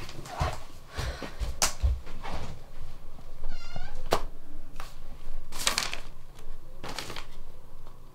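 Handling sounds on a bed: soft thumps, then a laptop lid shut with a sharp click about four seconds in, followed by paper rustling. A brief high-pitched cry is heard just before the click.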